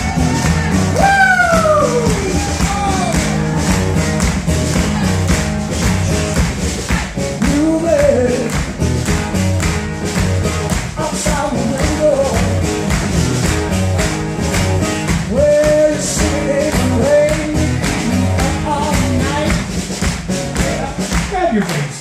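Live acoustic blues jam: acoustic guitar and a singing voice over a steady beat of hand claps.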